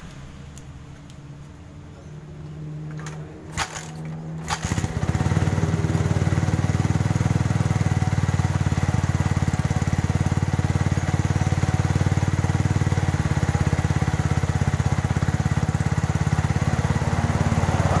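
Liquid-cooled Yamaha single-cylinder motorcycle engine being kick-started: a couple of knocks, then it catches about five seconds in and runs steadily with a fast even beat. Its worn piston skirt has just been pressed tight, and the owner judges the rough piston clatter much reduced but the engine not yet fully smooth.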